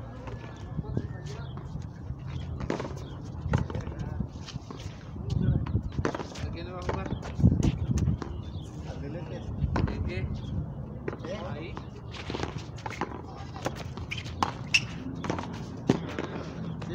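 Frontón rally: a hard ball repeatedly smacking against the concrete wall and being struck back, heard as sharp separate knocks a second or two apart, with voices talking in the background.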